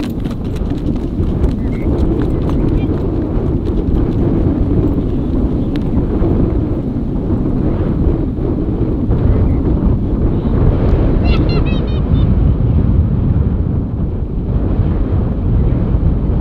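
Hooves of a ridden horse on a dirt track, clip-clopping mostly in the first few seconds as the horse moves away, under a steady rumble of wind on the microphone.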